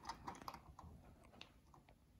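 About half a dozen faint, irregular clicks from a laptop being operated, against near silence.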